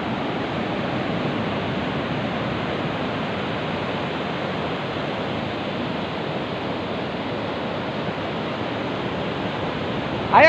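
Steady rushing noise of ocean surf breaking.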